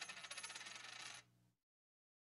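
Faint tail of an end-card sound effect: a fast rattle of ticks over a high ringing tone, dying away within the first second and a half.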